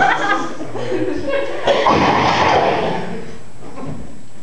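A voice finishing a line and laughing, then a louder spell of laughter a little under two seconds in that fades away before the end.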